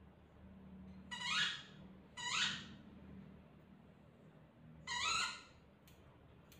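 A small dog whining three times, each a short high-pitched whine rising in pitch, the first two a second apart and the third a few seconds later.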